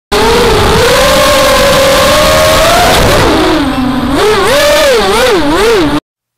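QAV210 racing quadcopter's brushless motors and propellers whining over a rush of air noise, the pitch holding fairly steady at first, then dipping and swinging quickly up and down several times with the throttle. The sound cuts off abruptly at the end.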